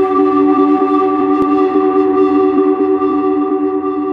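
A held synth chord from an electronic dance track intro: a few steady pitches sustained throughout, with a single click about a second and a half in and a slight fade near the end.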